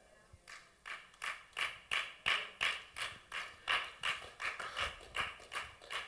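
Hands clapping in a steady rhythm, about three claps a second.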